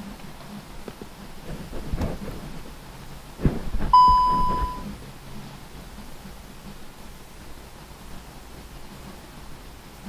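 A single electronic beep, a steady tone just under a second long, about four seconds in, preceded by a couple of soft knocks; otherwise low background noise.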